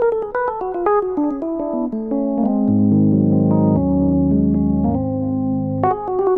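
Background keyboard music: a quick run of falling notes, then held chords over low bass notes, with a new run of notes starting near the end.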